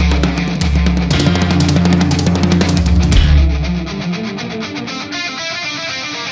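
Doom-metal band track: distorted electric guitars, bass and a drum kit with cymbal crashes playing together. About three and a half seconds in, the drums and bass drop out and the music goes on more quietly with a repeating melodic figure.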